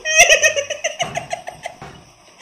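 A man laughing hard in a quick run of short, evenly spaced giggles that tail off over about two seconds.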